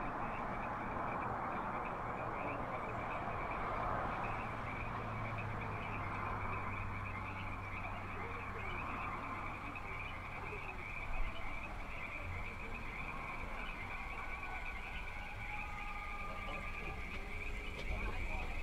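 Evening outdoor ambience: a steady, high chirring chorus over a low hum, with the faint, tinny sound of a drive-in speaker playing movie-trailer audio. A single knock comes about eleven seconds in.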